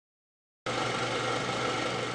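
Film-projector whirr and rattle used as a transition sound effect. It starts abruptly about two-thirds of a second in and runs steadily.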